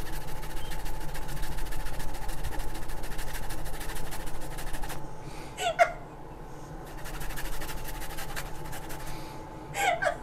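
Fresh ginger grated on a handheld metal grater, a fast run of rasping strokes that stops about five seconds in and starts again two seconds later.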